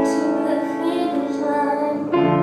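A young woman singing with upright piano accompaniment, her notes mostly held steady.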